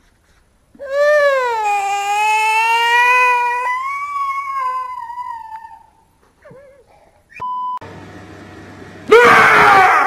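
A small child's long, high-pitched scream lasting about five seconds, dipping at first and then held. Then a short steady beep, and near the end a second, louder shriek.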